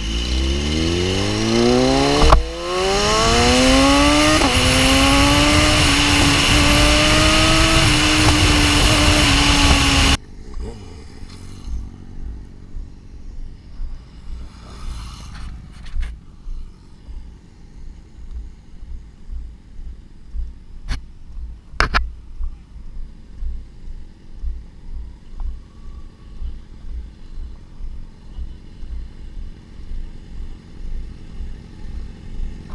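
BMW S1000RR's inline-four engine accelerating hard, its pitch climbing steeply with a gear change about two seconds in, then holding a steady high note under heavy wind noise at speed. The sound cuts off suddenly about ten seconds in. After that comes a quieter stretch of low, irregular rumbling with two sharp clicks a little past twenty seconds.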